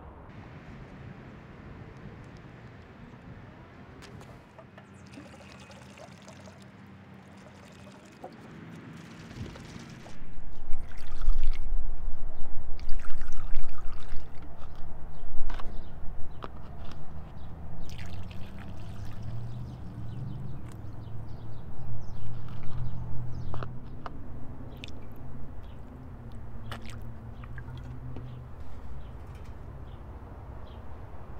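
Red acetone and automatic transmission fluid mix poured from a plastic bottle through a plastic funnel into an engine's spark plug holes, gurgling and trickling, as penetrating fluid to free a seized engine. It gets much louder about ten seconds in, with a low rumble and scattered clicks.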